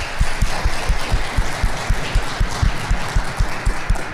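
Audience applauding, many hands clapping together steadily.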